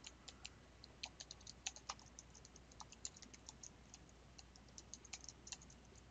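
Faint typing on a computer keyboard: an irregular run of quick keystrokes, several a second, as a line of text is typed.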